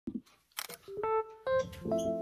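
Camera shutter click sound effects, two sharp clicks, followed from about a second in by a few keyboard notes stepping upward into a held chord, the start of an intro music sting.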